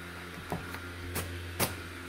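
Airblown inflatable's electric blower fan running with a steady low hum, with a few faint clicks scattered through it.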